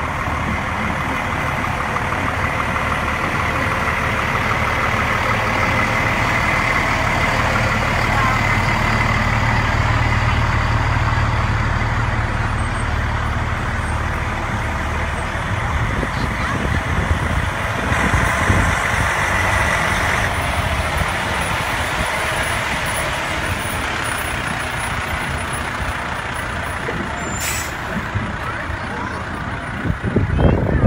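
Fire trucks driving slowly past, their engines rumbling louder as each one draws level and then easing off. A steady high tone sounds twice, a few seconds in and again past the halfway point.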